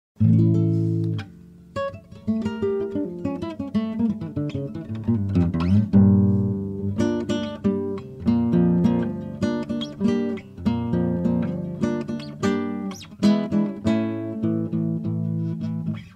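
Acoustic guitar music: a chord rings for about a second, then goes on in a steady run of picked notes and chords.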